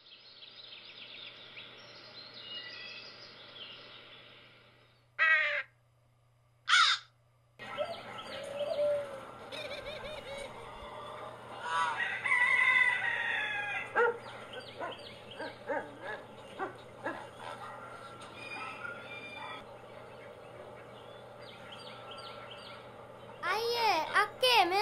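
Birds calling, with many short chirps and two loud, short sweeping calls about five and seven seconds in, then a busier run of varied calls.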